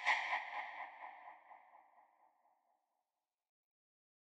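A logo sting for the end card: one sudden bright, ringing ping that fades away over about two and a half seconds.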